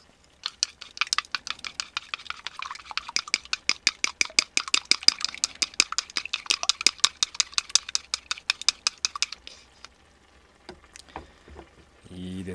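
Wooden chopsticks beating a raw egg in a small bowl: a fast run of sharp clicks as the sticks strike the bowl's side, about six a second. The clicking stops after about nine seconds, and a few scattered taps follow.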